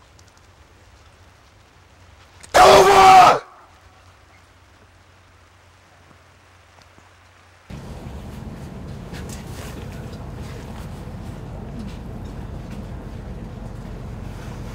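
An actor's loud yell in character, lasting under a second, about two and a half seconds in. From about eight seconds in, a steady low rushing noise sets in and holds.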